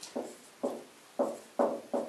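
Dry-erase marker squeaking on a whiteboard in a run of short strokes, about two a second, each starting sharply and fading quickly.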